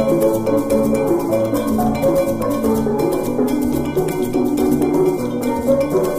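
Steel band music: steelpans playing a bright melody over low bass notes and a steady percussion beat.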